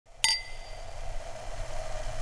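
A single bright clink of a wine glass about a quarter second in, its high ring fading over about a second, followed by a steady hum.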